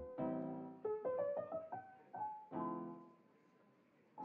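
Background piano music: a few soft chords and single notes, each dying away, fading out to near silence near the end.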